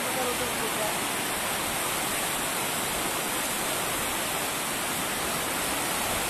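Steady, even rushing of flowing water, like a mountain river running below, holding at one level throughout.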